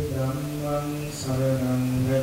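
Voices chanting a slow Buddhist devotional chant in unison, with long drawn-out notes and a brief hissing 's' sound about a second in.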